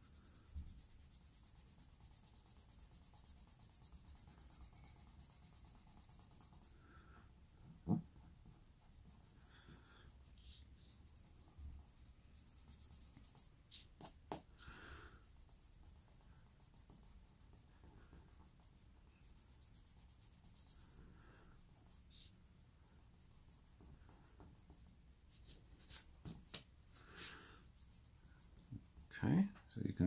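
Faint rubbing on drawing paper as graphite pencil shading is blended, quick back-and-forth strokes that run steadily for the first several seconds and then come in shorter spells. A few soft knocks, the clearest about eight seconds in.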